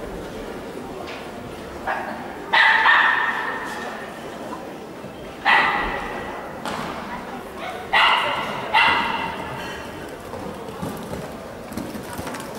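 A dog barking about five times, in three clusters a few seconds apart, each bark trailing off with some echo.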